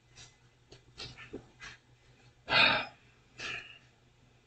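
Short, soft breathy exhalations from a man close to the microphone, the loudest a puff of breath about two and a half seconds in, with a faint steady low hum beneath.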